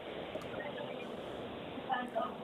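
Background noise coming over a caller's telephone line, with faint sounds in it that the hosts take for live music. A brief voice near the end.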